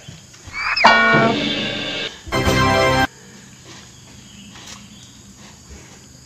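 A cow mooing twice: a call of about a second and a half that opens with a short rising-and-falling squeal, then a shorter, louder call that cuts off suddenly.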